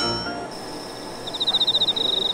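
Comedy sound effects: the ringing tail of a sharp chime fades out, then a steady high tone enters, and about halfway through a fast, evenly pulsed chirping trill like crickets starts, the stock cue for an awkward silence.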